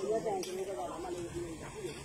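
People's voices talking and calling over one another, fainter than close speech, over a steady hiss.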